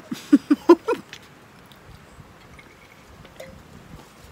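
A woman laughing briefly, a few short pulses in the first second, then only faint background noise.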